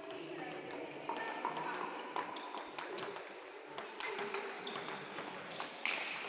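Table tennis balls clicking irregularly off bats and tables as several games go on at once, the loudest knocks about four seconds in and near the end.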